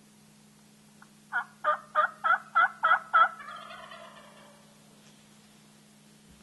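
A turkey yelping: seven evenly spaced yelps, about three a second, followed by a fainter, rougher tail that fades out.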